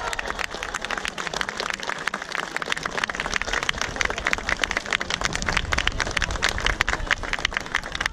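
Crowd applauding, many hands clapping at once, the clapping growing denser from about three seconds in.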